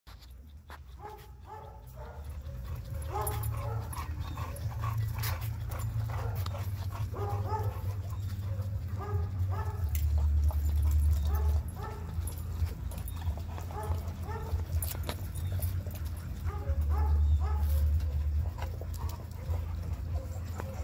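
Dogs vocalizing as they play, a run of short, repeated whines and yips, over a low rumble that swells twice.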